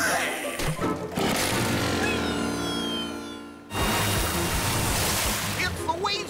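Cartoon background music with a run of high, falling chime-like tones. A little over halfway through, a sudden loud rush of splashing water starts and runs for about two seconds.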